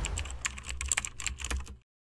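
Keyboard-typing sound effect: a quick run of sharp key clicks over a low hum, cutting off suddenly near the end.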